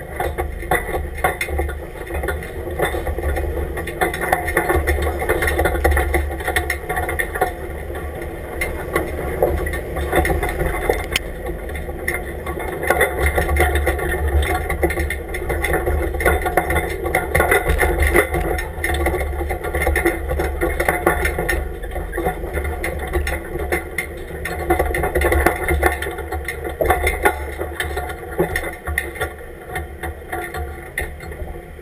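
Off-road 4x4 truck's engine running at low speed, with a continuous rattling clatter from the truck and its tyres crawling over sand and gravel. Heard from a camera mounted low on the outside of the truck beside a front wheel.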